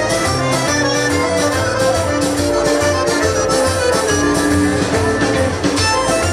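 Live band playing an upbeat tune with a steady beat: accordion, banjo, upright bass, guitar and drums.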